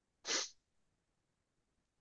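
A single short, airy breath noise from a person at the microphone, such as a sniff or a stifled sneeze, lasting about a quarter of a second.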